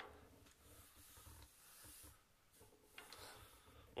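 Near silence, with faint rubbing of hands moving across a tabletop and handling small pieces.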